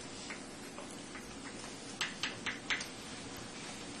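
Chalk tapping and scratching on a blackboard while writing: a string of short, light clicks, most of them between about two and three seconds in, over a steady room hum.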